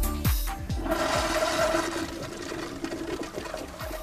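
An electronic dance beat plays for about the first second, then drops out while a toilet flushes, a rushing swirl of water lasting about three seconds.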